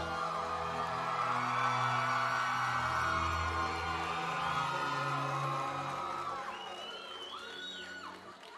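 Music with long held chords over low bass notes, fading down over the last couple of seconds.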